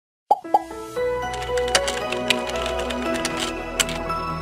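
Intro jingle: two quick pops, then light music of held bright notes with a few sharp clicks.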